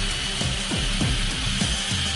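Makita LS1216L sliding compound miter saw running, a steady high whine over a noisy spinning-blade sound, with background music underneath.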